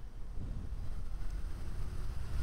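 Wind noise rumbling on the microphone while riding a DIY electric motorcycle at speed, over low road noise; the electric drive itself is quiet.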